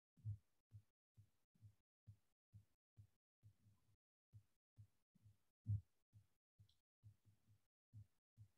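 Faint, regular low thumps, about two a second, with a louder one near the start and another about six seconds in.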